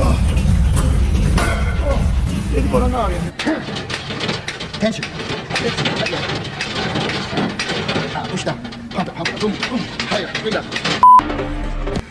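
Background music with a heavy bass beat, cutting after about three seconds to thinner voices over music. Near the end, a short, loud, steady beep.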